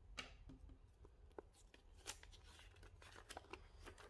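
Near silence with a few faint clicks and rustles from handling unboxed parts: a plastic CPU-cooler mounting bracket being set down on a table and the paper instruction manual being picked up.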